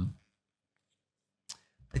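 A man's drawn-out "um" trailing off, then near silence with one short click about one and a half seconds in, and his voice starting again at the very end.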